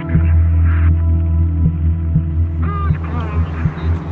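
Loud, low droning hum with a throbbing pulse, and a short warbling voice-like sound about three-quarters of the way through.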